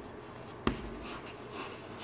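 Chalk writing on a blackboard: faint scratching strokes, with one sharp tap of the chalk about two-thirds of a second in.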